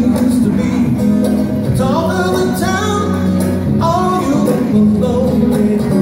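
Acoustic guitar played live with a man singing wordless melodic lines along with it, gliding up and down in pitch.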